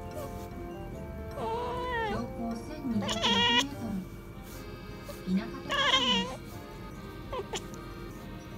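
Kitten chattering at prey it has spotted outside: three short bursts of high, wavering, squeaky calls about a second and a half, three and six seconds in, with a brief one near the end.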